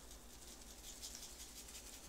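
Faint patter of a seasoning shaker sprinkling a salt, pepper and garlic rub onto a raw chuck roast.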